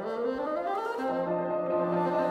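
Bassoon playing a quick upward run through the first second, then holding notes, over piano accompaniment.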